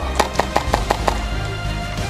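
HPA-powered KSC MP9 airsoft gun firing a quick string of about seven shots, roughly six a second, lasting under a second, over background music.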